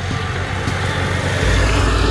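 Motorcycle approaching and passing close by, its engine and road noise swelling near the end.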